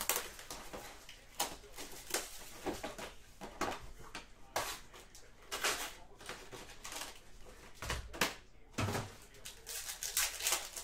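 Hands opening a sealed hobby box of trading cards and taking out the foil-wrapped packs: irregular rustling, crinkling and scraping of wrap, cardboard and foil packs.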